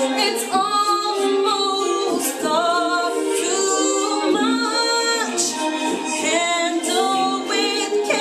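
A woman singing a pop ballad live, her solo voice holding several long notes.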